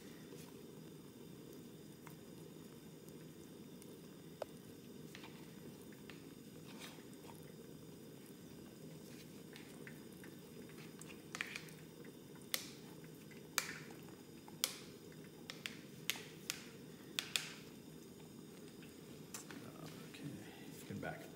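Utensil clicks and knocks while crystallized honey is dug and scraped out of its container into a pot: quiet at first, then about eight sharp knocks in the second half, over a steady low hum.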